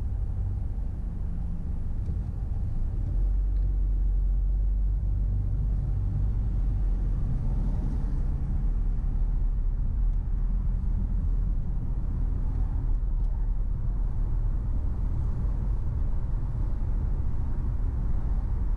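Low rumble of a car driving, engine and road noise picked up by a dash camera, growing louder about three seconds in as the car moves off from a stop, then steady.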